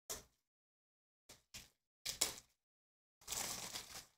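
A few brief rustles and clicks, then a longer rustle near the end, from plastic trading-card top loaders being handled.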